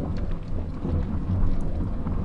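Steady low rumble with a faint hiss above it, an ambient background track of the kind that sounds like distant thunder and rain, carrying on between narrated sentences.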